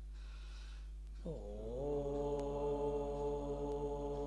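A man's voice chanting a mantra in long held tones; a breath is drawn in the first second, then the next note starts a little over a second in with a slide down in pitch and holds steady.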